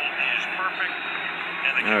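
Televised football game heard through the TV's speaker and recorded by a phone: a commentator talking over steady stadium crowd noise. A man in the room says "all right" right at the end.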